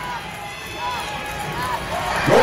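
Arena crowd murmuring, with scattered individual shouts and yells from spectators rising briefly above it.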